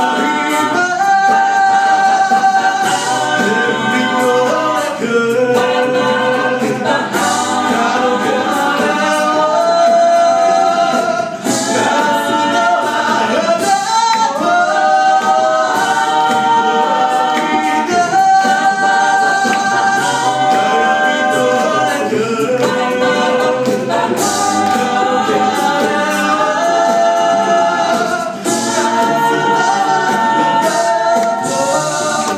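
Six-voice mixed a cappella group singing in close harmony: held chords under a lead melody, with sharp hits about every two seconds.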